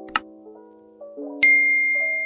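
A short click sound effect, then about one and a half seconds in another click and a bright bell ding that rings on: the sound effects of a subscribe-button click and its notification bell. Soft keyboard music plays underneath.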